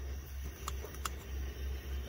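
Coleman Peak 1 pump-pressurized liquid-fuel camp stove burning steadily just after lighting, with a constant low rumble from the burner. Two faint clicks come about a second in.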